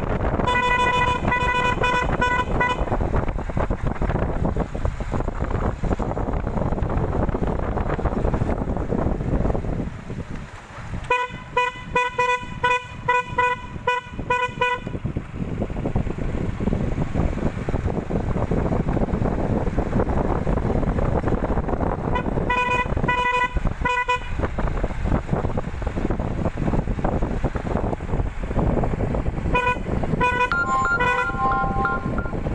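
A vehicle horn sounding in rapid repeated beeps, several a second, in four bursts: near the start, about eleven seconds in, about twenty-two seconds in and at the end. Underneath runs the steady rumble and wind noise of a moving vehicle.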